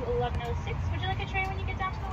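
Steady low rumble of an idling car heard from inside the cabin, with faint talk over it.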